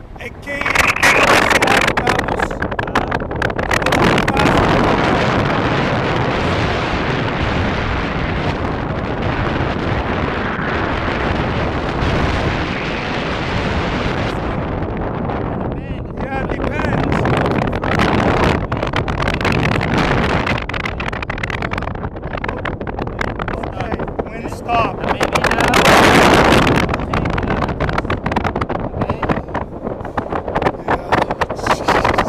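Loud wind buffeting the microphone of a camera carried on a tandem paraglider in flight. It jumps up about half a second in, then surges and eases, with voices partly heard under it.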